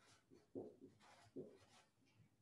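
Faint sounds of writing: a few short strokes, the clearest about half a second and a second and a half in.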